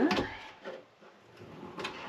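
A cabinet drawer being handled and set into its opening, with a light knock a little way in and two sharp knocks near the end.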